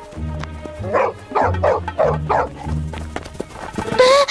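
A cartoon wolf gives several short, rough calls over background music with low, sustained bass notes.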